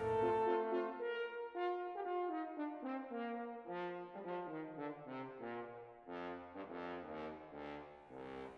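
French horn played without its valves, the player's hand in the bell changing the pitch (hand stopping): a run of separate notes, first stepping downward, then shorter notes moving up and down.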